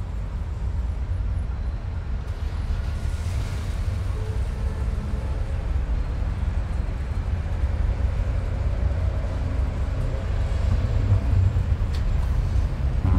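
A steady low rumble with a noisy haze above it, slowly growing louder, with a few faint scattered held tones. It is an ambient field-recording-like bed.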